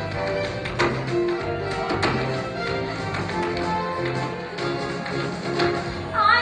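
Tap shoes striking a wooden stage floor in a solo tap routine, over an instrumental show-tune backing track. The sharpest taps come about one and two seconds in.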